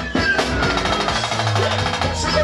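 Pagodão band music: a fast run of percussion strokes with a falling pitched glide in the first second, and a strong low bass note a little after the middle.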